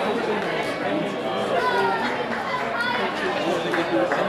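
Indistinct chatter of several people talking at once, with no single voice clear.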